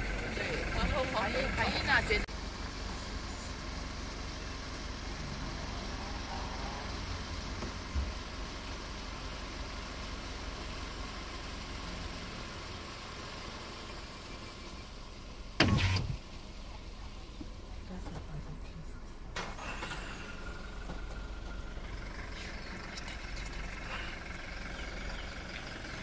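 Vehicle engine idling steadily, with one sharp knock about midway and a couple of fainter ones.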